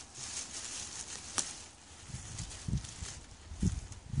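Gloved hands pulling back sweet potato vines and scraping through wood-chip mulch and soil: faint rustling and scraping, with one sharp click about a second and a half in and several low thumps in the second half.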